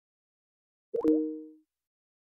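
Microsoft Teams call-dropped tone: a short two-note chime, the second note lower, fading out within about half a second. It signals that the call has been disconnected.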